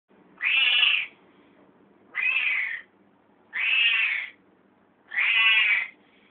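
Female house cat meowing four times, each call under a second long, about a second and a half apart.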